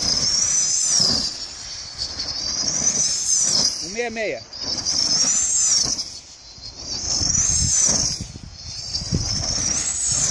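High-pitched whistling of a K2m radio-controlled glider flying dynamic-soaring laps at speed. The whistle swells and rises, then falls in pitch, about every two and a half seconds as the model circles past.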